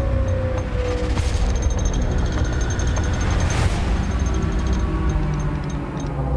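Film trailer soundtrack: a deep rumbling drone with a long held tone that dies away in the first second and a half, and two whooshing swells, about a second in and again midway through.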